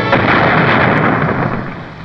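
Cartoon sound effect: a loud burst of noise like an explosion or crash that starts suddenly and fades away over about two seconds.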